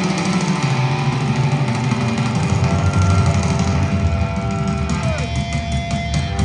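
Live hard rock band: electric guitar playing long held notes over bass and drums, with one note bent downward about five seconds in and the drum hits growing clearer near the end.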